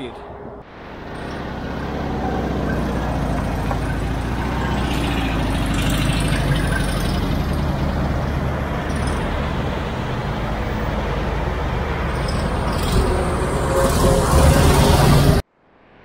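Road traffic going by on a highway, a steady noise of passing vehicles that grows louder near the end, then cuts off suddenly.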